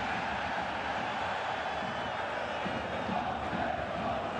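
Football stadium crowd: thousands of fans' voices blending into a steady, even noise.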